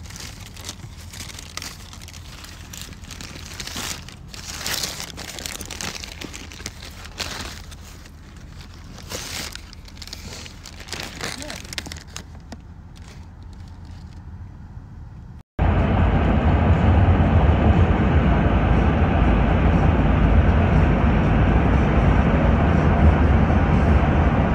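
Paper food wrapper crinkling and rustling in irregular bursts as a sandwich in it is handled. About two-thirds of the way through it cuts off suddenly to a loud, steady rumble of road noise inside a moving car.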